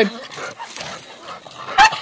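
A dog gives one short, high yip near the end, over a faint background.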